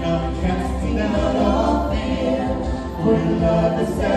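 Vocal trio of two women and a man singing together in harmony into handheld microphones, over a steady low accompaniment.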